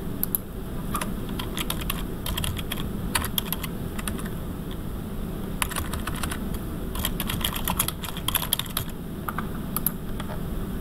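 Typing on a computer keyboard: irregular runs of keystrokes with short pauses between them, over a low steady hum.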